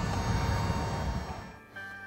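Steady whirring noise at a DC fast charger while it charges a car at high power; it fades out about one and a half seconds in and quiet background music begins.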